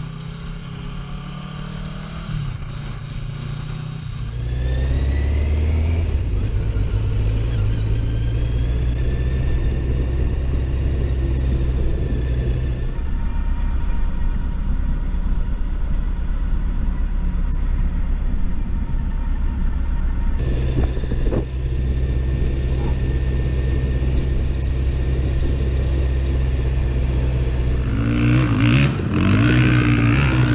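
Motorcycle engine running steadily, heard from the rider's own helmet or handlebar camera, with traffic around. Its character changes abruptly a few times, and rising and falling tones come in near the end.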